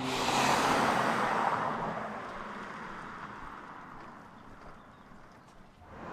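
A car driving past: engine and tyre noise loudest in the first second or two, then fading away over several seconds.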